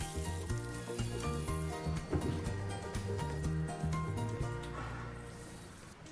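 Ground shrimp and pork filling sizzling in a frying pan as a wooden spatula stirs it, being quickly par-cooked, under background music that fades out toward the end.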